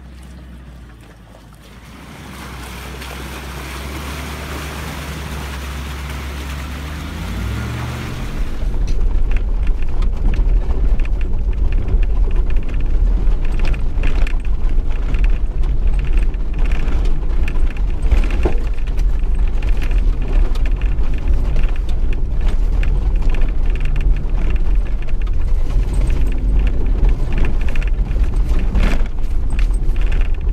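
Land Rover Discovery engine working up a rocky climb, its revs rising about seven seconds in. Then a loud, steady low rumble of engine and wind buffeting on a bonnet-mounted camera as the vehicle drives along a dirt track, with frequent knocks from the rough ground.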